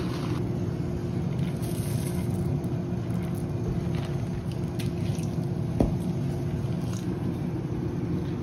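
A steady low hum with a faint steady tone, like a running fan or appliance. A few faint light clicks sound through it, and one short knock comes about six seconds in.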